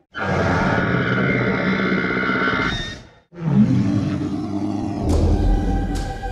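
Loud dramatic roaring sound effects on a film soundtrack: one about three seconds long that stops abruptly, then, after a brief gap, a second that opens with a low tone swooping down and levelling off. Eerie background music comes in near the end.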